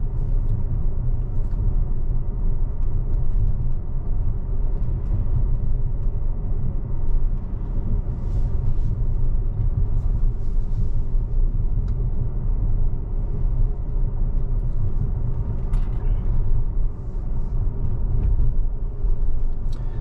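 Steady low road and tyre rumble inside the cabin of a Tesla Model X electric SUV cruising at about 35 mph, with no engine note.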